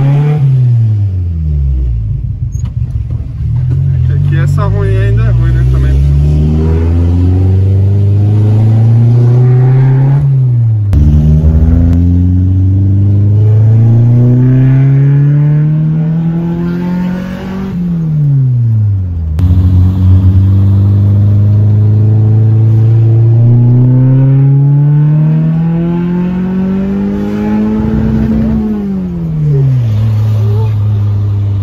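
Fiat Uno 1.6R's naturally aspirated 1.6-litre four-cylinder, fitted with a 288 camshaft and a 4-into-1 header on a straight-through sport exhaust, heard from inside the cabin accelerating hard. The engine note climbs steadily in three long pulls of several seconds each and falls away sharply between them.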